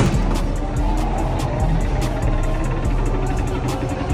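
A punch lands on the bag of a boxing arcade machine right at the start, making one sharp hit. It is followed by a steady arcade din with background music.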